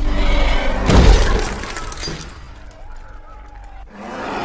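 A loud crash like something shattering about a second in, over a low dramatic trailer-music drone, dying away afterwards.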